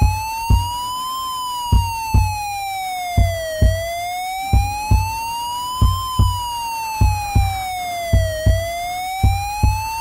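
A wailing siren tone glides slowly up and down, taking about two and a half seconds each way, laid over a heavy thudding drum beat that often falls in pairs: a siren sound in a music track.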